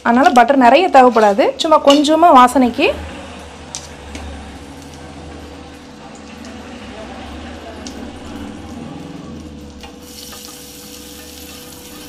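Butter melting and sizzling quietly in a hot nonstick frying pan, a steady frying hiss that grows brighter near the end.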